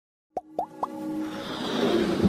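Three quick pops, each rising in pitch and about a quarter second apart, followed by a swelling electronic build-up: sound effects and music for an animated intro.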